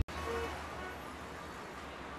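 Faint, steady city ambience: a low rumble of distant road traffic.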